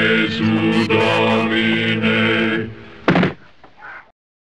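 A low voice holding a drawn-out, chant-like "ah", broken twice, that stops about two and a half seconds in, followed a little after three seconds by a single heavy thud.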